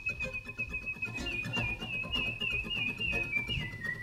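Human whistling carrying the melody: one long high note held with small repeated wavering turns, slipping lower near the end, over a soft rhythmic guitar accompaniment.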